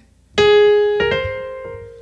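Piano playing two single right-hand melody notes, A-flat and then the C above it, each struck cleanly and left to ring and fade.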